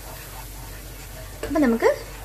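Masala sizzling gently in a pan on the stove while a spoon stirs a thick paste into it, a steady soft hiss. A short spoken phrase comes in near the end.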